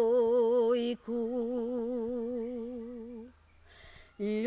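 A solo woman's voice sings unaccompanied in traditional Serbian folk style, holding long notes with a wide, regular wobble. One held note breaks off about a second in, and a second note is held for about two seconds before it fades away.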